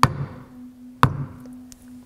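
A leatherworking maul strikes a stamp twice, about a second apart, with two sharp knocks as it presses a mark into wetted veg-tan leather.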